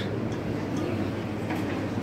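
Steady low hum and rumble of a supermarket's background noise.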